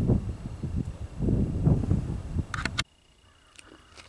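Wind buffeting the microphone in an irregular low rumble, with a couple of sharp clicks near the end, then an abrupt drop to near quiet.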